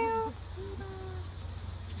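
A monkey giving short, even-pitched coo calls: one clear coo at the start, then a couple of fainter, lower coos ending about a second in.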